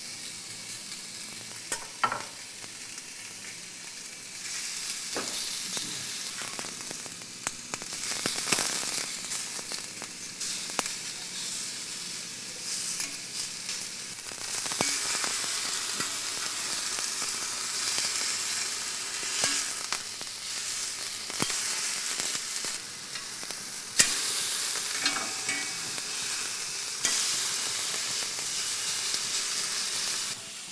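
Beef steak searing on a hot ridged grill pan: a steady sizzle that starts suddenly as the meat goes down and gets louder about halfway through. A few sharp clicks come from the metal tongs knocking on the pan.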